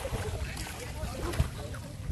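Water splashing and churning as children swim in an outdoor pool.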